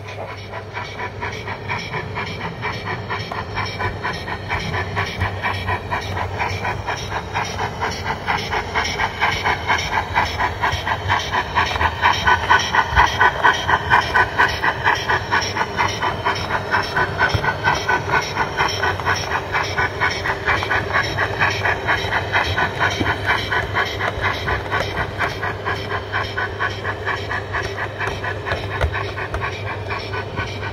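Sound decoder of an O gauge model steam tank locomotive playing a steady, rhythmic exhaust chuff with hiss as it runs, growing louder as the engine passes close around the middle and easing off after, over a low steady hum.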